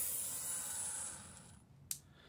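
Cordless drill turning a propeller shaft, powered through an external motor speed regulator, winding down and fading out over about a second and a half. A single sharp click comes near the end.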